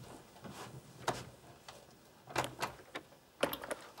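A few scattered clicks, then a quick cluster of clicks near the end as a door handle is worked; the handle has come loose and does not open the door.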